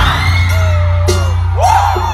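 Hip-hop beat over a concert PA: a deep 808 bass sweeps down and drops in at the start, then holds under the track, with voices whooping and yelling over it.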